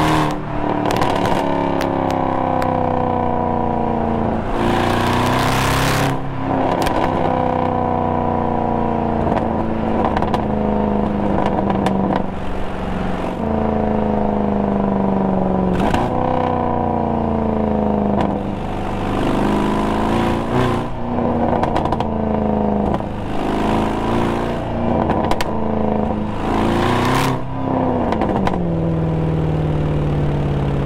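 Mercedes-AMG C63 Black Series' 6.2-litre V8 pulling along on the road at moderate revs, the engine note sagging slowly and picking up again with the throttle. Short bursts of exhaust crackle and pops come on lifts, about four seconds in and several times later, and near the end the revs drop away.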